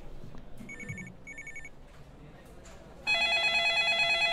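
A telephone ringing for an incoming call. A faint double ring comes about half a second in, then a louder ring starts about three seconds in.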